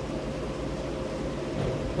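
Steady mechanical hum with a faint constant tone, as from a running fan or motor.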